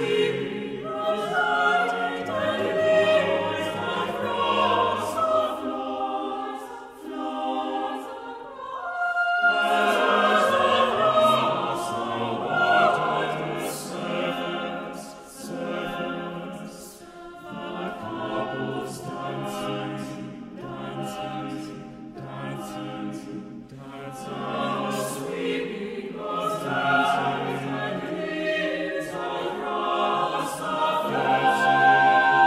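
Chamber choir singing a slow contemporary choral piece: many voices holding overlapping sustained chords, with hissing consonants of the text cutting through. The sound swells and ebbs, with a fuller, louder entry about a third of the way in.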